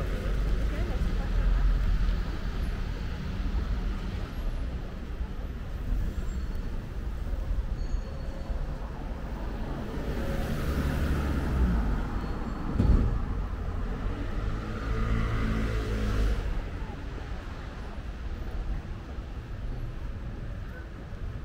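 Street traffic: road vehicles running and passing on a town high street, one engine swelling by through the middle, with a single sharp thump about two-thirds of the way in.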